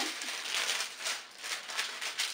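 A sheet of parchment paper rustling and crinkling as it is handled and laid down flat, loudest about half a second in.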